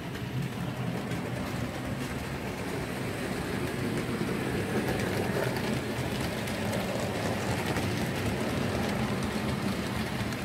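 Model train running on the layout's track past the camera: a steady rumble of wheels and motor that grows louder about four seconds in as the coaches pass close, with a light rapid clicking of wheels over the rail joints.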